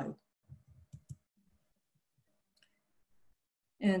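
A pause with a few faint, short clicks about a second in, then near silence.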